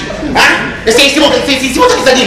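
A man's voice, loud and shouted in short outbursts, as a stage performer speaks.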